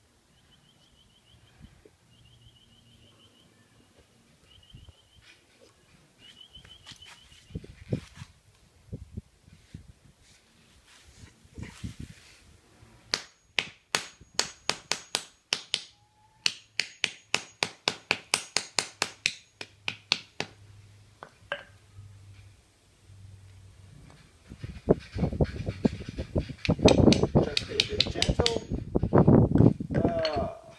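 Claw hammer tapping a plaster of Paris mould on a concrete floor. A few scattered knocks come first, then two quick runs of sharp taps, about four a second, as the plaster cracks apart. Near the end comes a louder spell of crunching and scraping as the broken plaster pieces are handled.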